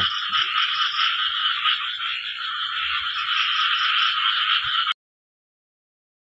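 A dense night chorus of frogs calling after rain, with a fast, evenly repeating call above it. It cuts off suddenly about five seconds in.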